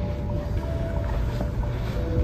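A low, steady rumble with a faint held tone above it.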